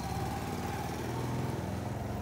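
Motorcycle engine running steadily at low revs.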